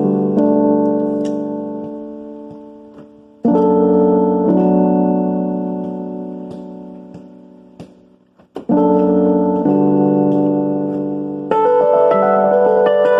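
Piano chords played slowly, each struck and held so it dies away for several seconds before the next: new chords come about a third of the way in, past the middle, and near the end, with a bass note changing just before the last.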